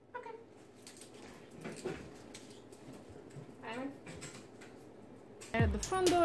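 Dog whining: a few faint, short high-pitched cries that rise and fall, spread out, with a louder burst of whines near the end.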